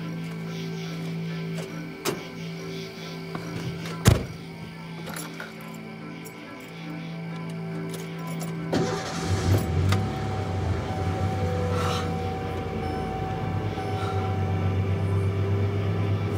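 Film score with sustained droning tones. A sharp knock comes about four seconds in, and from about nine seconds a pickup truck's engine starts and keeps running with a steady low rumble under the music.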